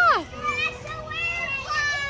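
Young children's high-pitched voices: a rising-and-falling exclamation, then overlapping calls and chatter.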